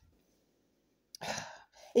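A short, breathy human sigh about a second in, after a moment of near silence.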